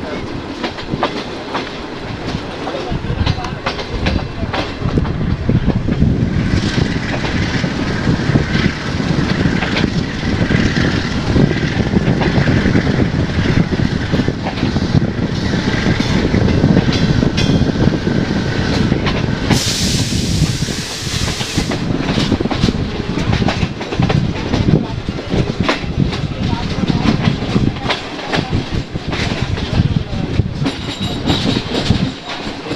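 Diesel-hauled passenger train running at speed, heard from the open door of the coach behind the locomotive: steady running noise with wheels clattering over the rail joints. A faint high wheel squeal comes and goes in the middle, and a brief loud hiss sounds about twenty seconds in.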